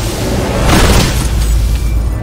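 A deep cinematic boom over loud trailer music, with a rushing swell that peaks just under a second in.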